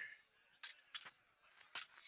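Near silence broken by three faint, short clicks.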